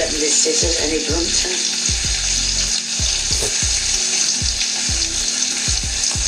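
Pot of cream with spaghetti and bacon bubbling and sizzling, a steady hiss. A music track's deep beat thumps underneath about twice a second.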